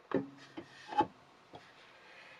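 Wooden gears of a lathe jig knocking together as a small gear is set onto its shaft, meshing with a large gear: two sharp wooden knocks about a second apart, the first with a brief low ring, then a lighter tick.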